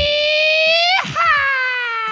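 A man's long, drawn-out hype call into a microphone. One held 'ohhh' rises slowly in pitch and breaks off about a second in, then a second one starts higher and slides steadily down.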